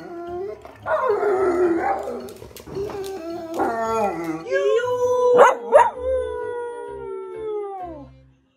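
Two dogs howling together, their pitch wavering up and down. In the second half one long howl slowly falls in pitch.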